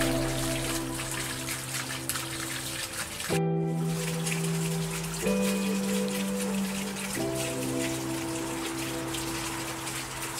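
Slow background music of held, soft chords that change every two seconds or so, over a steady patter of rain. The rain briefly cuts out about three and a half seconds in.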